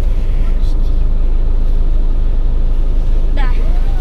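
Steady low rumble of a car idling, heard inside the stationary car's cabin.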